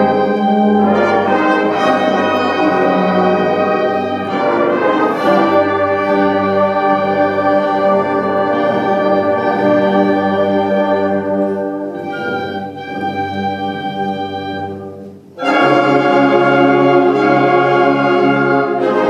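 High school concert band playing held chords, with the brass prominent. About fifteen seconds in the sound thins and dies away briefly, then the full band comes back in loudly.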